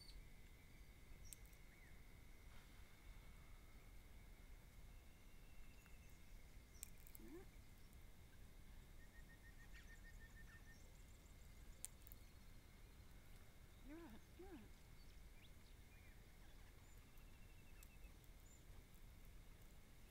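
Near silence: quiet garden ambience with a faint steady high tone, broken by a few faint sharp clicks and brief faint chirps.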